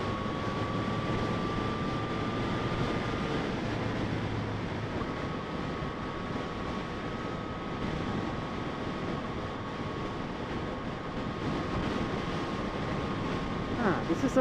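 Yamaha FZ-09's inline three-cylinder engine running at a steady freeway cruise, mixed with wind and road noise, with a faint high whine held through most of it.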